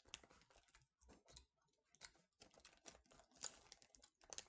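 Faint, irregular wet mouth clicks of a person chewing a jelly bean.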